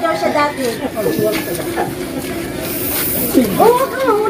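Indistinct voices of several people talking over one another, with a hiss running underneath.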